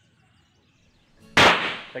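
A single handgun shot about one and a half seconds in, sharp and loud, with its report echoing away over about half a second.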